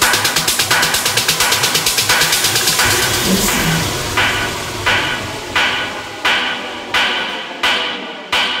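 Techno music. A fast, dense beat runs through the first half, then the bass drops away and the track thins to pulsing stabs about once every 0.7 seconds, like a breakdown.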